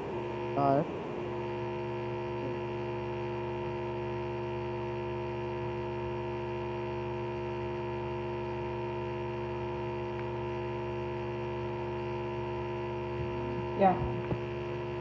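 Steady electrical hum, a buzz made of several fixed tones held at an even level, on the video call's audio line.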